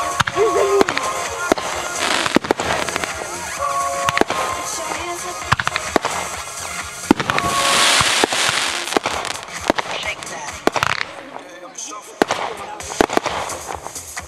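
Aerial fireworks going off: a string of sharp bangs, with a loud spell of crackling hiss about eight seconds in and more crackle near the end.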